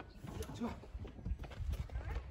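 Light knocks and rustling of a person climbing out of a car through its open door, over a low steady outdoor rumble, with faint voices.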